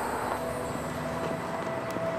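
Steady outdoor background ambience: an even, low rumble with a few faint held tones and no distinct events.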